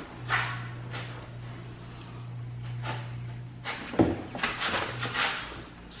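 A woman groaning and breathing hard with effort as she struggles to climb out of a car seat, in two bouts: one near the start and a longer one about four seconds in. A low steady hum runs under the first part and stops a little before the second bout.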